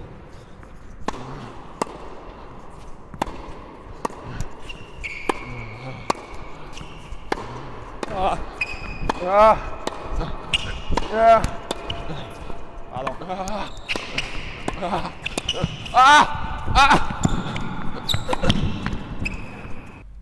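Tennis rally on an indoor hard court: a tennis ball struck back and forth with a Wilson Clash V2 racquet, giving sharp hits about every second, with short high squeaks of court shoes in among them.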